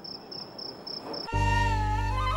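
Crickets chirping, a high pulsed chirp repeating about four times a second. About a second and a half in it stops, and background music starts: a loud low held drone under a wavering melody.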